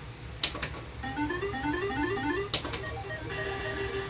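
Electronic slot machine game sounds: a few sharp clicks, then quick runs of rising electronic beeps as the reels spin, more clicks about two and a half seconds in, and another electronic jingle near the end.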